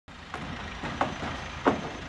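Steady background noise of a rail construction site with heavy machinery running, broken by three short sharp sounds.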